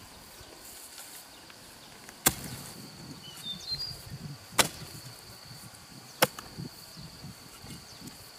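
Hoe blade chopping into the ground: three sharp blows about two seconds apart, with softer thuds of earth between them.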